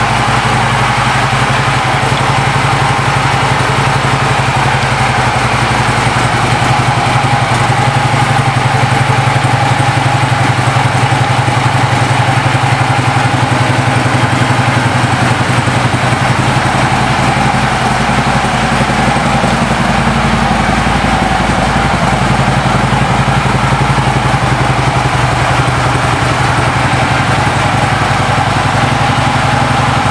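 Harley-Davidson Street Glide's Twin Cam 103 V-twin idling steadily, with an even low pulse and no revving.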